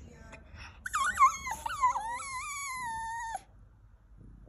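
Poodle whining: one long, high-pitched, wavering cry that slides downward in pitch, starting about a second in and cutting off abruptly near the end. It is a jealous, attention-seeking whine.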